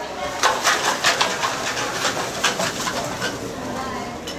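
Costumes made of plastic bags and hanging cans and bottles rustling and crackling as the wearers move their arms: a quick run of crackly bursts in the first two and a half seconds or so, then a softer rustle.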